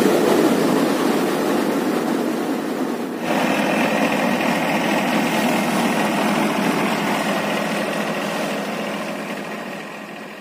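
Power-driven paddy thresher running steadily as rice sheaves are fed into its spinning drum: a dense, loud mechanical running noise. It shifts abruptly about three seconds in and fades out near the end.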